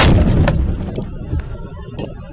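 A single loud bang at the very start, after which the noise falls away to a low rumble with a few light clicks.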